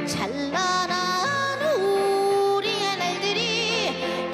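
A woman singing a slow, ornamented melody, with long held notes, pitch slides and vibrato, accompanying herself on keyboard chords with a steady low bass line. A long held note about two seconds in, and a wavering vibrato near the end.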